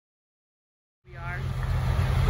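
Silence for about a second, then outdoor sound comes in suddenly: a loud, low, rough rumble with a brief high voice over it.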